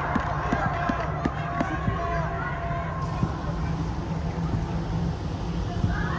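Players' voices calling out on an indoor football pitch, mostly early on, with a few sharp knocks. A steady low hum runs under it, in a large reverberant air-dome hall.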